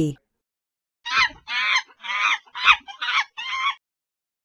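Monkey calling: a run of six loud, high-pitched cries in quick succession, lasting about three seconds.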